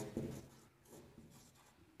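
Faint rubbing of a marker writing on a whiteboard.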